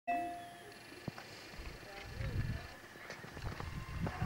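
Faint, indistinct voices with low rumbles and a single sharp click about a second in.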